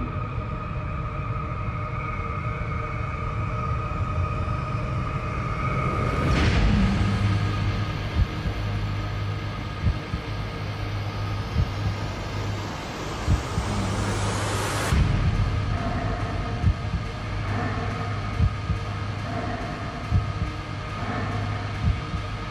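Ominous film-trailer score and sound design: a low rumbling drone with a steady hum under it. A loud whoosh swells about six seconds in, then a long rising sweep builds and cuts off suddenly at about fifteen seconds, with sharp hits roughly every two seconds from about eight seconds on.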